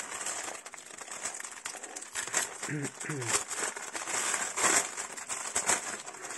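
Clear plastic packaging bag crinkling and rustling as it is pulled open and handled, with irregular crackles and a louder one about three-quarters of the way through.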